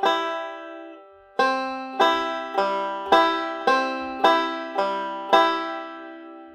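Five-string banjo picking a C-chord backup pinch pattern: a single string, then a pinch, then another string, then a pinch. One plucked chord rings at the start, and after about a second and a half the pattern is picked evenly at about two notes a second, with the last pinch left to ring near the end.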